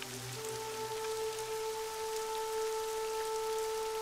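Soft background music: a sustained pad of held notes that shifts to a new, higher note just after the start, over a steady even hiss.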